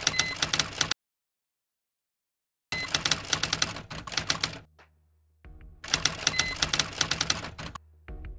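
Typewriter-style key clicks sounding as on-screen text is typed out: three rapid runs of clicks, each one to two seconds long, with a silent gap after the first. A low steady hum comes in about halfway through.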